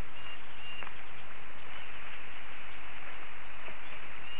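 Forest ambience: a steady hiss with a few faint, brief high bird chirps.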